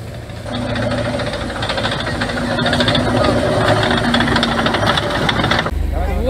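Heavy off-road vehicle's engine running as it drives closer along a dirt track, growing louder over the first few seconds. Near the end the sound cuts to a steadier low engine hum.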